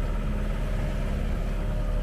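Steady low drone of a sailing yacht's inboard diesel engine running under way, with an even hiss of water rushing along the hull.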